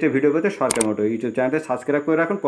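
A man talking, with one short sharp click a little under a second in: the mouse-click sound effect of an on-screen subscribe-button animation.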